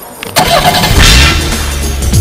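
Car engine that comes in suddenly about a third of a second in and runs loudly, with music underneath.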